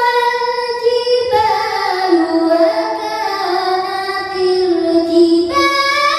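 A young girl reciting the Qur'an in melodic tilawah style. She holds one long phrase that steps slowly down in pitch, and a new, higher phrase begins near the end.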